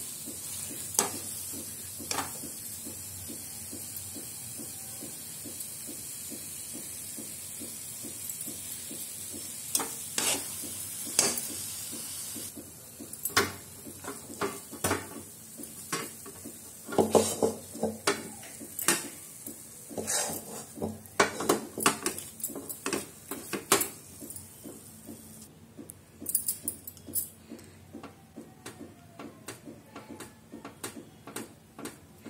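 Metal spoon scraping and knocking against a steel kadai and a steel tray as thick coconut barfi mixture is scooped out and pressed flat. A steady hiss runs under the first part and stops suddenly about twelve seconds in, after which the scrapes and knocks come thick and fast.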